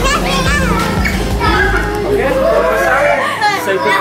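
Young children playing and chattering in high, excited voices, with adults' voices among them, over background music whose bass stops a little after three seconds in.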